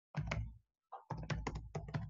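Typing on a computer keyboard: a short burst of keystrokes, a pause, then a quick run of keystrokes from about a second in.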